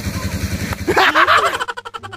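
A small engine running nearby with a steady, fast low beat, joined by a loud vocal shout about a second in; music comes in near the end as the engine drops away.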